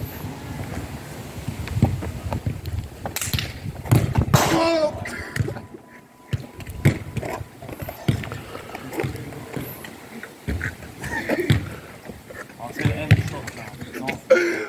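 Indistinct voices calling out across an outdoor court, with several sharp knocks of a football being kicked and bouncing on the hard tarmac surface.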